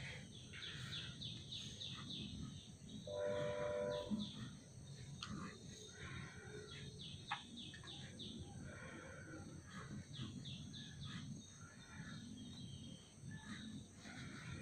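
Faint background of small birds chirping over and over, with one short steady-pitched call or tone about three seconds in.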